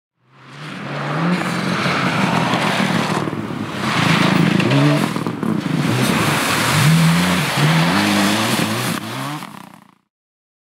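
Rally car engines revving hard and shifting up several times, their note climbing and dropping with each gear change, over the rush of tyres on gravel. The sound fades in at the start and fades out near the end.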